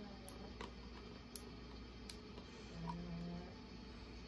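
Quiet room with a few faint separate clicks from a small plastic spray bottle being handled close to the microphone, and a brief low hum about three seconds in.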